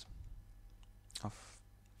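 A single sharp click at the very start from the computer being worked while editing code, then faint steady room hiss.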